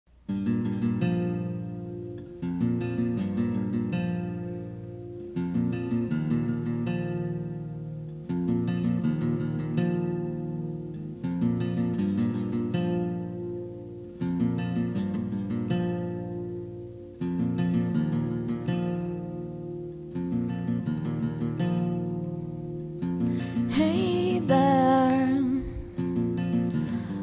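Acoustic guitar intro: strummed chords ringing out, with a strong accented strum about every three seconds. Near the end a woman's voice starts singing over the guitar.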